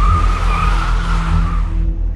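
Car tyres squealing for about a second and a half, fading out near the end, over background music with a steady bass.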